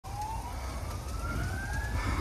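A siren wailing, its pitch rising slowly and steadily throughout, over a low rumble of background noise.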